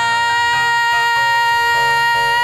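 A singer holding one long high note into the microphone, steady at first and breaking into vibrato near the end, over piano chords that change beneath it.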